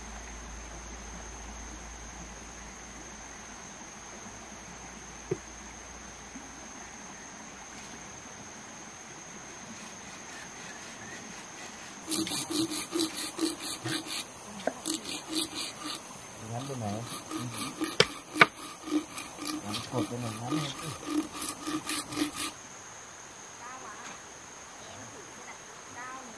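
Digging tool jabbing and scraping into wet, muddy soil to dig a post hole for a bamboo post: quick, repeated strokes, about three a second, starting about halfway in and stopping shortly before the end. Before the digging there is only a steady, high-pitched insect drone over quiet forest background.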